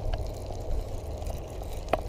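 Steady low rush of running river water, with one brief click near the end.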